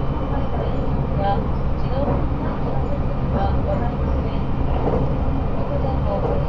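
Steady running noise inside a 681-series electric limited-express train at speed, as heard from within a motor car: an even, low rumble of wheels on rail and the car body, with no sharp events.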